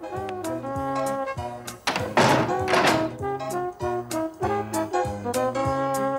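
Comic film score with brass over a steady bouncing bass beat. About two seconds in, a loud noisy crash lasting about a second sounds over the music.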